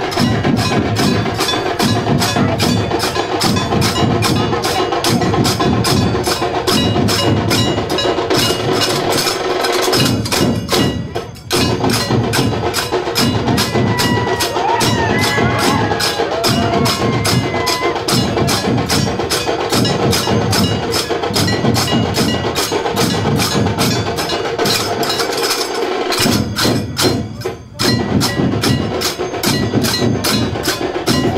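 A dhol-tasha troupe playing: large dhol drums beat a repeating low rhythm under a fast, even clash of brass hand cymbals (jhanj). The rhythm breaks off briefly about ten seconds in and again near the end, then starts again.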